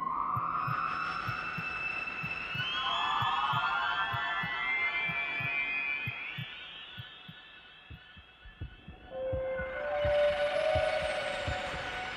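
Ambient electronic music: layered sustained synthesizer tones that swell, fade out past the middle and return near the end, over a steady low pulse like a heartbeat.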